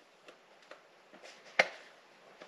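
Faint handling noises from a plastic handheld OBD2 code reader being turned in the hand, with a few light ticks and one sharper click about one and a half seconds in.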